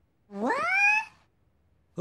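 A cartoon character's voice giving one short cry that rises in pitch, about half a second in.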